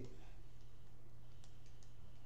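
Faint paper rustle and a few small ticks from a paper receipt being handled, mostly about three-quarters of the way through, over a steady low electrical hum.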